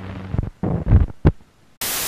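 Television switch-on sound effect: a low electrical hum, then a few heavy low thumps around the middle, then loud hissing TV static starting near the end.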